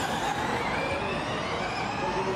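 Formula E Gen2 electric race cars accelerating out of a hairpin: a high electric-drivetrain whine rising in pitch over tyre and road noise.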